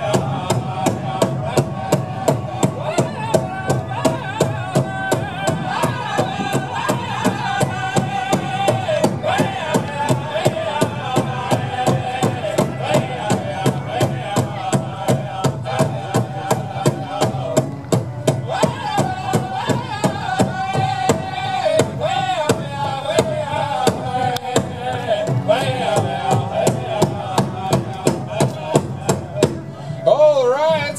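Powwow drum and singers: a fast, steady drumbeat under high, wavering chanted singing, accompanying the dance; the song stops just before the end.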